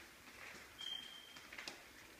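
Quiet room tone with a brief, thin, high-pitched tone a little under a second in and a few faint clicks.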